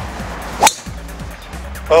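Golf driver striking a ball off the tee: one sharp, solid crack a little over half a second in, over background music.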